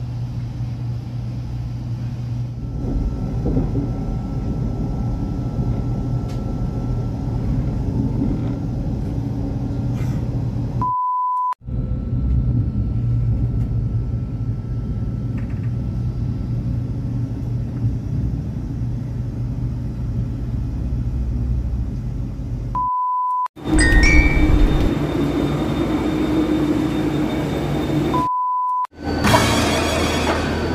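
Steady low rumble of a KTX high-speed train heard from inside the carriage while it runs. It is broken three times, at about 11, 23 and 28 seconds, by a short steady beep and a moment of silence.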